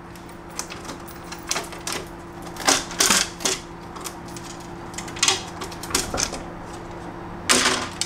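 Scattered clicks and knocks of an Evolve Carbon GTR electric skateboard's unscrewed carbon deck being worked loose, lifted off the enclosure and laid down, with a louder scuff near the end. A faint steady hum runs underneath.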